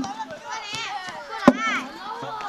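Children's high-pitched voices talking and calling out, with two sharp knocks: one at the start and a louder one about a second and a half in.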